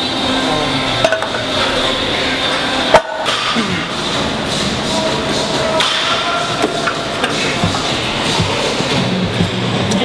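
Barbell weight plates clanking as they are loaded onto the bar, with one sharp, loud clank about three seconds in and lesser knocks around it, over a steady background noise.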